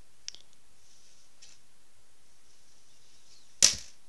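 A thin plastic pick-up stick snapped by hand: one loud, sharp crack near the end, after a faint click a moment in.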